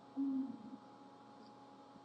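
A short, low hummed "mm" from a person's voice, heard once just after the start, then faint room tone.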